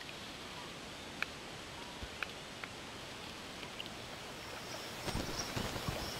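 Faint outdoor lake ambience: a steady soft hiss with a few short, faint chirps scattered through it, and a few soft low knocks near the end.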